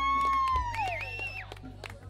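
A person's long, high whoop: one call that rises, holds and then slides down over about a second and a half. A second, higher call sits briefly over it in the middle. Scattered sharp clicks and a steady low hum lie under it.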